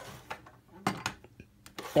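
A metal die-cast 1:24 scale stock car with rubber wheels being turned over by hand and set down on its wheels on a hard surface: a short rub, then a few light knocks about a second in and again near the end.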